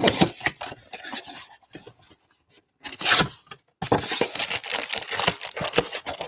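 Plastic shrink-wrap being torn and crinkled off a cardboard Topps Chrome card box as its flaps are pulled open. A run of crackling tearing sounds stops about two seconds in, then comes a short burst and steady crinkling through the second half.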